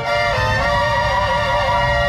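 Live Mexican banda music: the wind and brass section holds sustained chords, changing to a new chord about a third of a second in, over a steady low pulse from the tuba and percussion.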